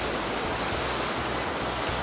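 Ocean surf washing against a rocky shore below, a steady rush, with some wind rumble on the microphone.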